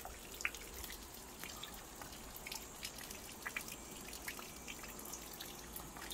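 Rain dripping outdoors: scattered, irregular drops landing on wet ground, leaves and puddles, over a faint steady hiss.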